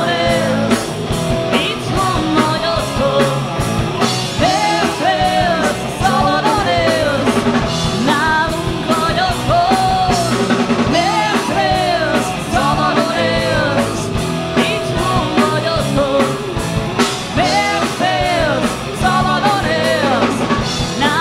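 Hard rock band playing live: electric guitars and a drum kit, with a male lead vocalist singing over them throughout.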